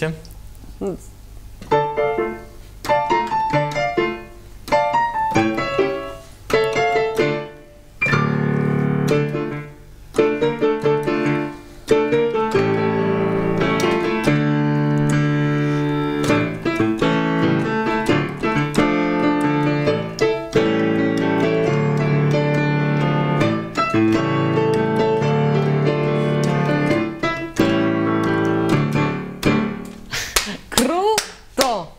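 Electric stage piano being played. For the first ten seconds or so a melody comes in short phrases with pauses between them. After that the playing runs on without a break, fuller, with chords and bass notes.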